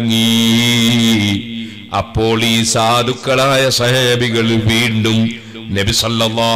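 A man's voice chanting in a drawn-out, melodic recitation style, holding one long note at the start and then moving through shorter sung phrases, with brief pauses about a second and a half and five seconds in.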